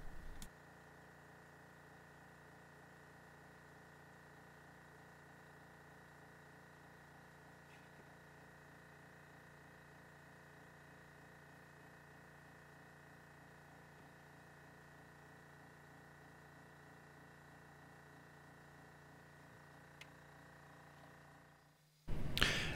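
Near silence: faint steady room tone, with one tiny click near the end.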